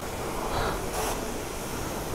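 Kärcher self-service pressure-washer lance spraying a jet of water onto a motorcycle and the wet concrete, a steady hiss.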